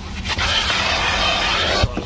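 Vacuum hose nozzle sucking and scraping over car floor carpet: a dense rushing hiss that swells about a third of a second in and breaks off briefly near the end with a soft knock. It is a vacuum whose suction the user calls bad.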